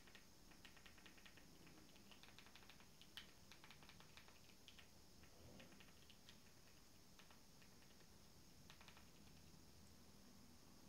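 Very faint clicks of a Fire TV Stick remote's buttons, pressed in quick runs to move across and pick letters on an on-screen keyboard, with one sharper click about three seconds in.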